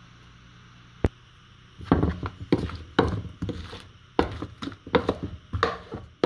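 Wooden spoon stirring and tossing raw kohlrabi cubes with olive oil and seasoning in a plastic mixing bowl: a run of irregular knocks and clatters that starts about two seconds in. A single sharp click comes a second before it.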